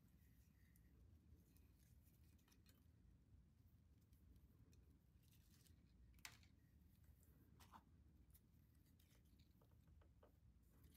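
Near silence: room tone with a few faint, brief clicks of hands handling the sinew and roots, the loudest about six seconds in.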